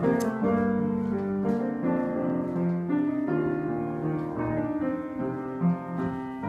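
Grand piano being played: held chords and melody notes, each ringing on until the next.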